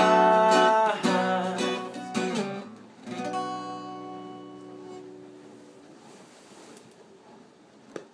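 Acoustic guitar strumming the closing chords of a song, ending on a last chord about three seconds in that rings out and slowly fades away. A faint knock right at the end.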